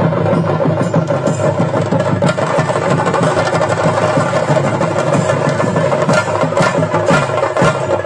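Continuous, dense live drumming of the chenda ensemble that accompanies a Theyyam performance, loud and unbroken.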